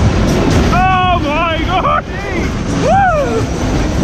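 Wind rushing over the microphone and the rumble of a spinning Twist fairground ride, with riders whooping in short rising-and-falling calls about a second in and again near three seconds.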